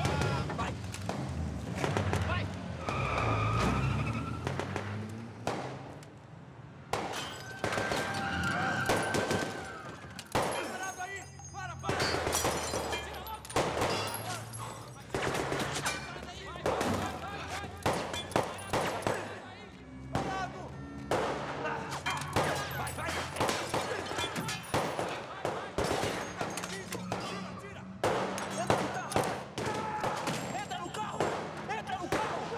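Film action soundtrack: repeated gunshots, some in rapid bursts, mixed with shouting voices and a music score.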